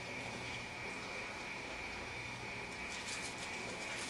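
Steady background ambience with a faint constant high-pitched tone, and a few soft clicks about three seconds in.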